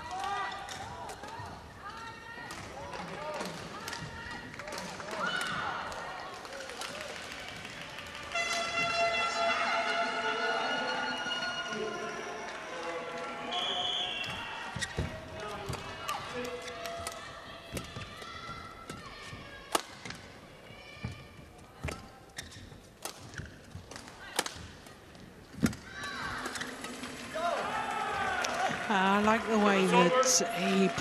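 Badminton singles rally: sharp racket hits on the shuttlecock and thumps of footwork on the court floor, irregular, through the second half. Before it come voices with a long held pitched call, and after the rally ends come shouts.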